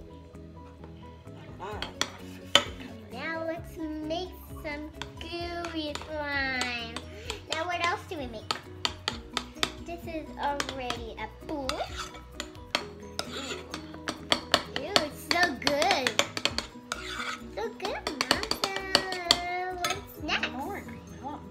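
A spoon clinking and scraping against a ceramic bowl as shaving foam and food colouring are stirred for fluffy slime, with many sharp clicks, over music playing in the background.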